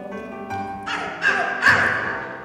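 Live cabaret song: a singer holding notes over the accompaniment, growing louder and harsher about halfway through, with a falling swoop in pitch.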